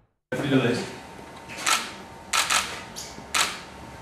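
Camera shutters clicking about six times, several in quick succession, over faint voices in a room.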